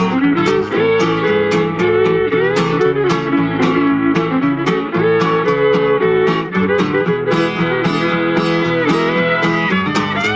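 Acoustic fiddle and guitar duo playing live: the fiddle bows the melody with sliding notes while an acoustic guitar strums a steady rhythm accompaniment, about three strokes a second.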